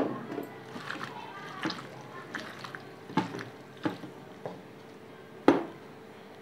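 A hand mixing raw chicken pieces in a thick, wet masala marinade in a bowl: scattered soft squelches and small clicks, the sharpest click near the end.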